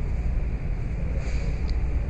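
A steady low rumble with no distinct events.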